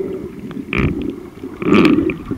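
Muffled, low water noise heard through a camera held underwater, with two louder gurgling bursts, one near the middle and one near the end.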